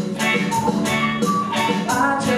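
Live rock band playing: a drum kit keeping a steady beat, with bass guitar and electric guitar, and a boy singing lead into a microphone.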